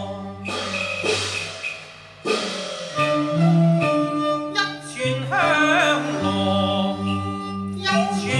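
Cantonese opera music: traditional Chinese instrumental accompaniment between sung lines. A burst of percussion comes about half a second in, then sustained melodic instruments carry on, with a wavering melody line near the middle.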